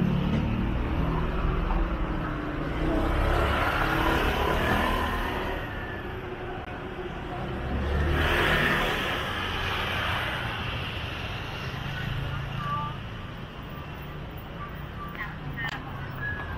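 City street ambience: traffic noise that swells and fades twice, with faint voices in the background.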